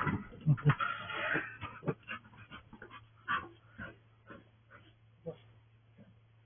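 A dog whining and panting, with footsteps and claw clicks on the porch boards and steps, heard through a security camera's microphone. The steps get fainter as the dog and walker move away.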